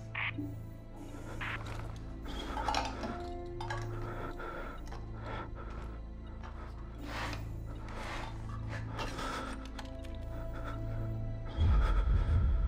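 A low, steady film-score drone under repeated clinks and knocks of metal tins being handled and packed into a wooden crate. A louder low rumble comes in suddenly near the end.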